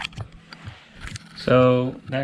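A man's voice says a short word or sound about a second and a half in, the loudest thing here. Before it there are a few faint clicks over quiet room tone.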